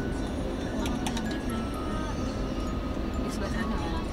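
Background music over the steady low rumble of a car driving, heard from inside the cabin.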